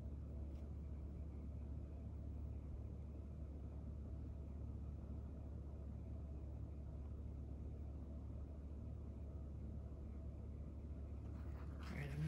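Quiet room tone: a steady low hum with a faint click shortly after the start.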